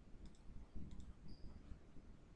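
A few faint computer mouse clicks, some in quick pairs, clicking RStudio's Run button to execute R code line by line.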